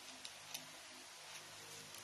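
Quiet room tone with a few faint small clicks and ticks from hands handling fabric petals and a wired flower stem.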